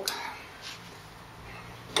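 Quiet handling of metal on a milling machine: a few faint clicks as the small aluminium part is worked out of the collet block in the vise, with a sharper metallic click at the end, over a low steady hum.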